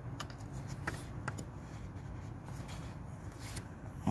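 Faint handling noise of a plastic coolant hose connector being worked into its fitting by hand, with a few small clicks, over a low steady rumble.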